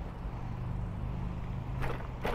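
Car traffic on a road: a steady low engine hum over road noise, with one short sharp sound near the end.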